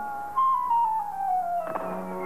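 Cartoon falling sound in the score: a single whistle-like tone gliding down in small steps for about a second and a half, after a held chord fades out. A new sustained chord comes in near the end.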